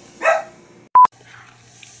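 A single short bark-like call about a quarter second in, then a short, loud, steady test-tone beep about a second in, the beep marking an edit cut between outtake clips.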